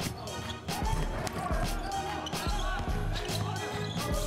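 Background music with a steady beat and heavy bass, laid over basketball game footage.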